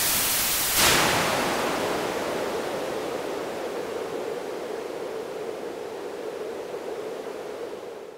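Synthesised white noise played through a band-pass filter centred on 440 Hz. It begins as a full hiss; as the filter's Q factor is raised, the high hiss fades and the sound narrows to a band of noise around 440 Hz, growing gradually quieter.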